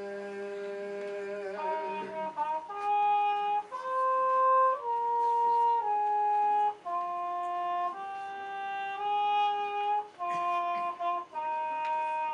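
A held a cappella chord from four male voices dies away in the first couple of seconds. Then a muted trumpet plays an unaccompanied jazz line, one melody in separate held notes.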